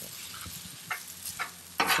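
Metal spatulas scraping and stirring fried rice on a Blackstone steel griddle, over a steady sizzle of frying, with a few sharp scrapes, the loudest just before the end.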